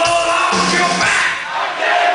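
Metal band playing live at high volume, heard from inside the crowd, with the audience shouting along. The deep bass and drums drop out a little past the middle, leaving the shouting and the higher parts of the music.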